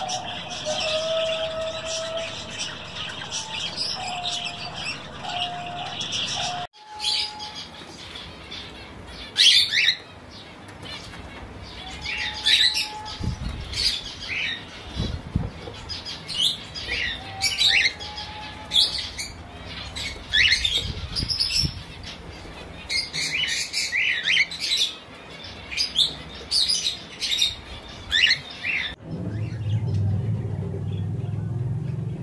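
Caged Java sparrows calling. At first there is a steady background chatter with a few low whistled notes. After a cut about seven seconds in come short, sharp chirps in irregular clusters.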